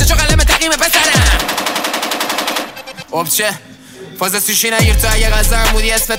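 A Persian rap track plays: a rapper over a hip-hop beat with deep, downward-gliding 808 bass hits and a fast rattling run of clicks. About halfway through, the beat drops out for a second or so, leaving only a few sparse notes, then comes back in full.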